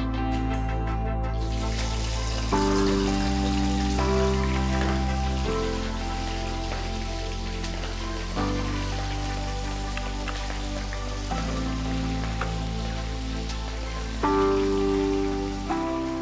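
Background music of held chords changing every few seconds, over a steady sizzling hiss of food deep-frying in oil.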